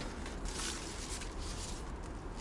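Quiet, steady background noise with a low rumble and no distinct event.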